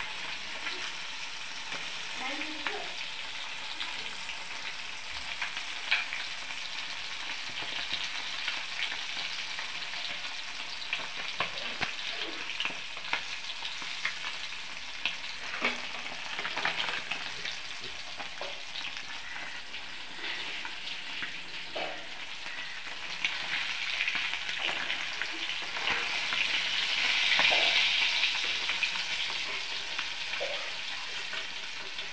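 Small whole fish frying in hot oil in a steel kadai: a steady sizzle with crackling pops, and now and then a metal spatula scraping and knocking against the pan as the fish are turned. The sizzle swells louder near the end.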